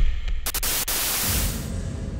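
Intro sound effect for an animated logo: a burst of static-like hiss with a few sharp clicks over a low rumble, thinning out near the end.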